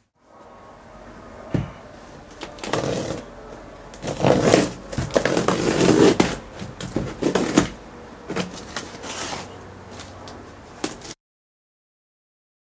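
Cardboard shipping box being opened by hand: packing tape peeled and cardboard scraping and rustling in irregular bursts, loudest in the middle. The sound stops abruptly near the end.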